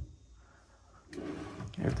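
A wooden cabinet drawer sliding shut on its metal runners: one short rumbling slide of under a second, about halfway in.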